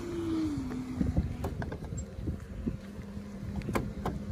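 Tesla Supercharger charging handle being handled just after unplugging, with two sharp clicks. Wind rumble on the microphone and a steady hum that steps down in pitch about a second in run underneath.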